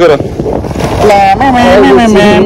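Wind rushing over the microphone and a low rumble from a moving motor scooter, under men's voices: a few words at the start, then from about a second in one long drawn-out voice.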